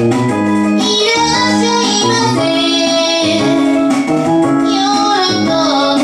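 A woman singing with a keytar (shoulder-slung electronic keyboard) accompaniment in a live performance. Sustained sung notes over steady keyboard chords.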